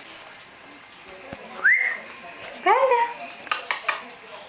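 A person whistling a single rising note that levels off, followed by a short high call that rises and falls, and a few sharp clicks near the end.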